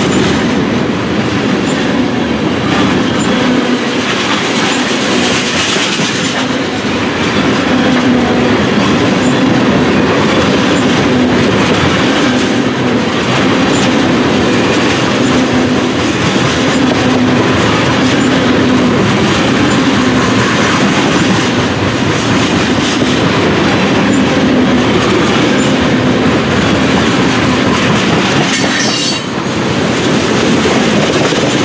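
Freight train tank cars rolling past at close range: a loud, steady noise of steel wheels on rail with a regular clacking. A brief sharp high sound comes about a second before the end.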